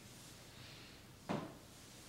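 A single brief, soft knock a little over a second in, an object being handled as a seated person reaches down to the floor, over quiet room tone.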